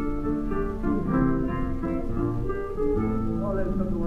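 Flamenco guitar playing a solo passage of plucked notes between sung verses, heard from a 1930 shellac 78 rpm record.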